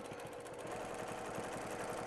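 Domestic sewing machine running steadily at speed, its needle stitching rapidly in free-motion quilting.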